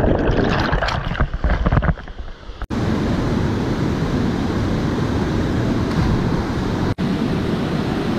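Turbulent white water churning and splashing around the camera, uneven and full of low rumbles. About two and a half seconds in it cuts to the steady rush of a small waterfall pouring into a rock pool.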